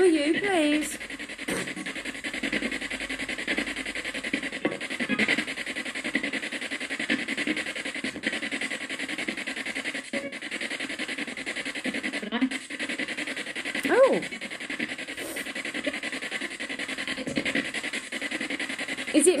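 Ghost-box style radio sweep played through a small speaker: steady static with chopped fragments of voices running on, and a brief rising-and-falling voice-like sound about fourteen seconds in.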